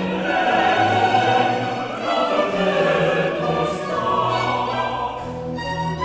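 Baroque opera chorus singing with orchestra.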